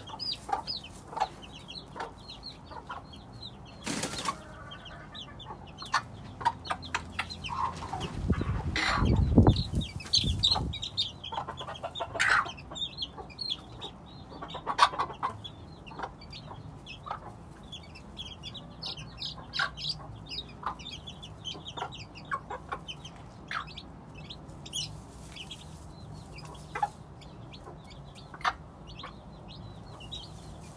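Game hen clucking while her chicks peep with many short high chirps throughout. A sharp knock about four seconds in, and a loud low rustle lasting about two seconds near the middle.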